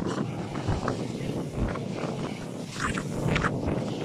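Steady low rumbling outdoor background noise, with a short laugh near the end.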